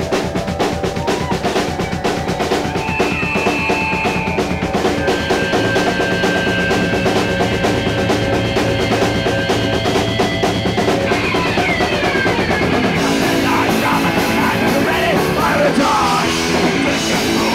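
Live punk rock band starting a song, the drum kit in front with fast, steady drumming under held notes. The sound thickens about thirteen seconds in.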